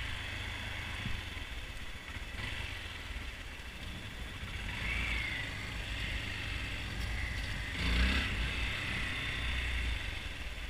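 Honda Grom's 125 cc single-cylinder engine running steadily as the motorcycle rolls at low speed. The engine gets briefly louder about eight seconds in.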